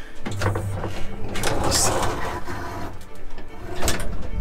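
Small old passenger lift starting to move: a steady motor hum sets in just after the start. A louder rattling, scraping clatter comes about halfway through, and a sharp knock comes near the end.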